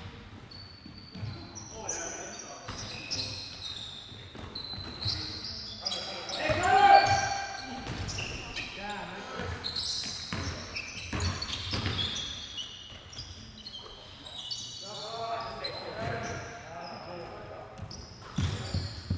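Indoor basketball game on a hardwood gym floor: the ball bouncing as it is dribbled, sneakers squeaking in short high chirps, and players calling out in an echoing hall. The loudest moment is a shout about seven seconds in.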